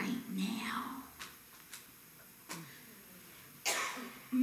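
A woman's voice speaking softly, partly whispered. Then comes a quieter lull with a few faint clicks, and a short, breathy rush of air near the end.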